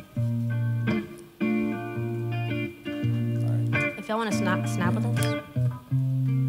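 Live band playing the slow opening of a love song: electric guitar chords over a bass guitar, each chord held for a second or so before the next comes in.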